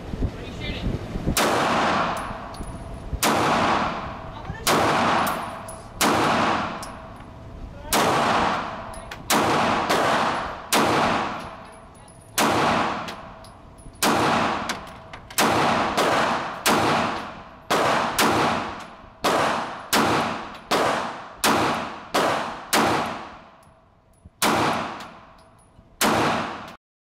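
A 9 mm Springfield Armory Hellcat pistol firing a long string of shots on an indoor range. The first few shots are spaced out, then they come at a steady pace of roughly one shot a second or faster. Each shot rings off the concrete range walls before the next.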